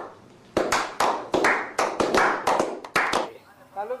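A few people clapping their hands: sharp separate claps, about five a second, starting about half a second in and stopping a little after three seconds.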